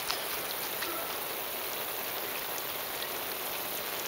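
Steady hiss of water spraying from a slip 'n slide's sprinkler jets onto the grass and the plastic sheet.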